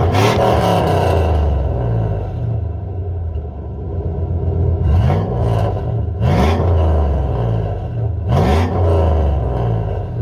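A 2005 Chevy Silverado's 5.3-litre V8 idling loud through a Thrush Rattler muffler with the catalytic converters deleted, blipped four times with quick rises in revs that fall back to idle.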